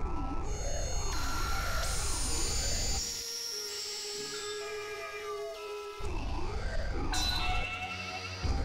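Novation Supernova II synthesizer playing an experimental noise drone: several tones sweep up and down past each other, repeating about once a second over a dense low rumble. About three seconds in, the rumble and the sweeps drop out, leaving held high tones and slowly falling glides. The sweeps and rumble come back near the end.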